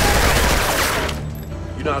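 Rapid automatic rifle fire from an AK-style rifle, a dense continuous burst that stops about a second in.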